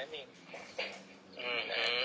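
Speech from a played-back recorded conversation: a man's voice ends a phrase, then holds a long, wavering drawn-out vowel near the end, over a faint steady hum.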